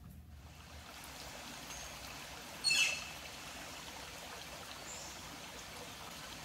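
A shallow creek trickling steadily over rocks. About three seconds in, a bird gives a short, quick run of high chirps, and a couple of fainter high calls come and go.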